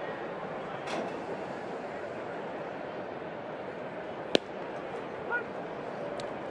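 Steady ballpark crowd murmur, with one sharp pop about four seconds in as a pitch of about 84 mph smacks into the catcher's mitt for a strike.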